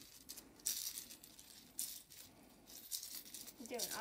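Homemade music shaker, a plastic egg filled with small beads, buttons and bells and taped between two plastic spoons, rattling in a few short, irregular shakes.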